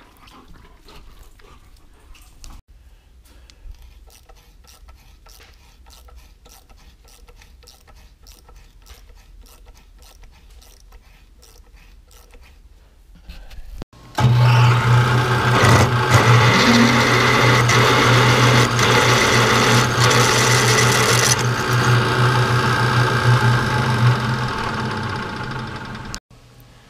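A drill press starts about halfway through and runs loud and steady, a low motor hum with a cutting hiss as a twist drill bores through 3/8-inch steel plate. It winds down just before the end. Before it starts there are only faint, scattered ticks.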